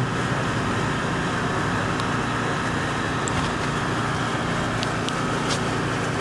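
Steady mechanical drone holding several constant tones, with a few faint clicks.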